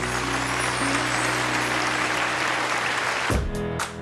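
Audience applauding over the fading last held chord of the song's backing track. About three seconds in, it cuts to an electronic intro jingle with heavy, evenly spaced drum hits.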